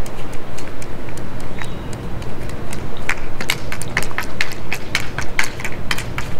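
Hockey stick tapping a ball on asphalt while stickhandling: a run of sharp clicks that grows quicker from about halfway, over a steady low background noise.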